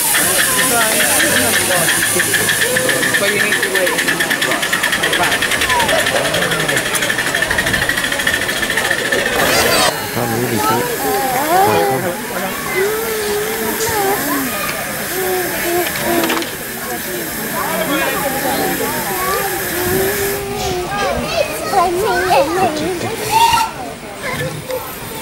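Miniature live-steam locomotive, a model of LNER 458, venting steam with a loud, steady hiss that drops off suddenly about ten seconds in and carries on more weakly until it fades out near the end. People chatter throughout.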